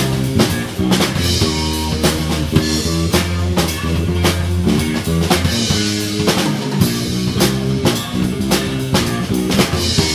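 Live blues band playing an instrumental passage without vocals. A drum kit, with snare and bass drum, keeps a steady beat under electric bass and electric guitar.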